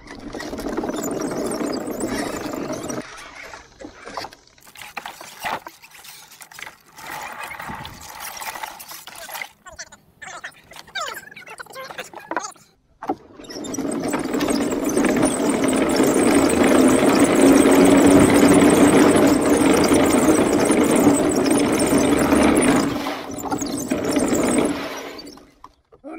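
Homebuilt wooden tank driven by dual NPC Black Max electric motors, its plywood-slat tracks clattering over pavement as it drives. It runs for a few seconds, moves in short stop-start bursts, then runs continuously for about twelve seconds before stopping suddenly near the end.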